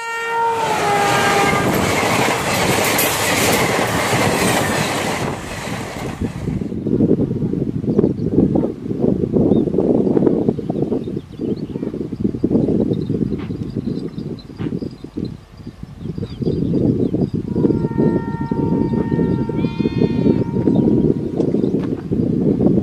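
Passenger express hauled by a WAP-4 electric locomotive passing close by: its horn sounds at the start and drops in pitch as it goes by, then a loud rush of the locomotive for several seconds. The coaches follow, rumbling past with rhythmic clickety-clack of wheels over rail joints, and a fainter steady tone sounds in the last few seconds.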